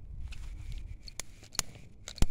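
Novelty crackling-ball firework going off: a low rumble, then sharp crackle pops, one about a second in and another near the end.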